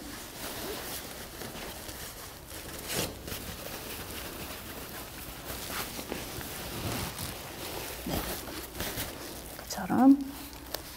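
Faint rustling and handling of a Cambodian wrap skirt's fabric as it is rolled and tucked at the waist, with a few soft brushes and taps.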